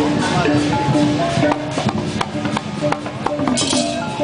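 Parade music from marching drummers: a melody of held notes over hand-drum hits. After about a second and a half the melody thins and scattered drum strokes carry on, with a brief hiss of higher percussion near the end.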